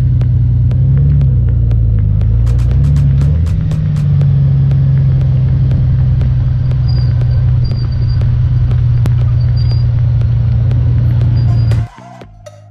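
Motorcycle engine running under way with wind rumbling on the microphone as the bike pulls out and rides along the road: a loud, steady low drone whose pitch wavers briefly in the first few seconds, then holds even until it cuts off suddenly near the end.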